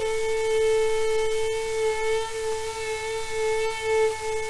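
Solo violin holding one long, steady note that wavers slightly in its second half, heard from a 1933 shellac 78 rpm record with the disc's surface crackle and scattered clicks.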